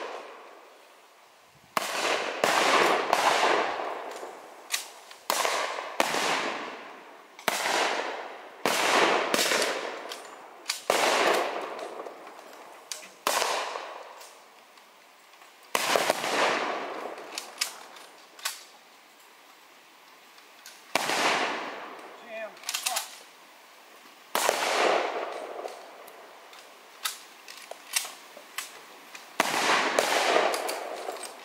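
Blank gunfire from WWII-era rifles and small arms. The shots are irregular, some single and some in quick bursts, each with an echoing tail, and there is a lull of a few seconds past the middle.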